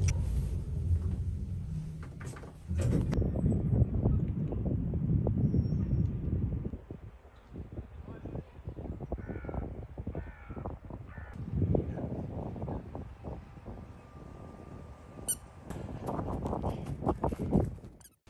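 Outdoor ambience of a low rumble with scattered knocks, and a few short rising bird calls a little past the middle.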